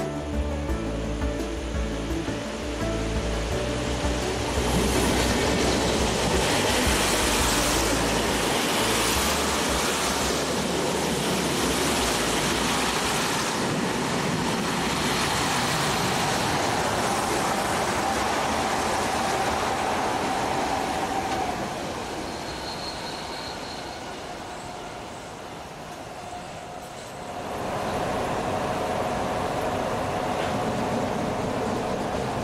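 Background music ends in the first few seconds and a DB regional push-pull train with a class 141 electric locomotive passes close: a loud, even rush and rattle of wheels on the rails for about fifteen seconds that slowly dies away. Near the end a new steady hum with a faint held tone sets in.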